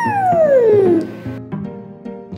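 A cartoon sound effect: a whistle-like tone that glides steadily down in pitch and fades about a second in, over background music with a steady beat.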